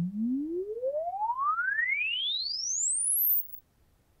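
A sine-wave sweep test tone rises steadily in pitch from a low hum to a very high whistle and cuts off suddenly about three and a half seconds in. It is the test signal used to record the unaided ear's frequency response.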